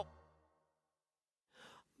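The song's last chord cuts off and dies away quickly, leaving near silence. Near the end comes a short, faint breath.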